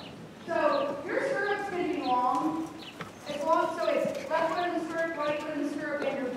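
A horse's hoofbeats, with a person's voice talking over them.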